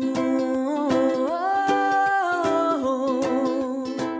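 A woman sings a wordless melody over steady ukulele strumming; her voice steps up to a long held high note in the middle and then comes back down.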